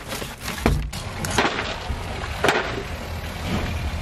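Plastic bags rustling and junk knocking as items are handled in a car boot, with a few sharp knocks about a second in, near the middle and two and a half seconds in.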